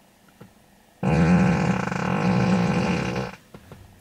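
Tesla Model 3's novelty fart sound, the whoopee-cushion feature of its Emissions Testing Mode, played through the car's cabin speakers: one long drawn-out fart that starts suddenly about a second in and lasts about two and a half seconds.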